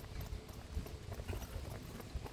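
Faint clopping knocks on a hard street surface over a steady low rumble.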